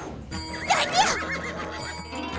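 Background music from a TV sitcom's score with a short, wavering, whinny-like comic sound effect about half a second to a second in.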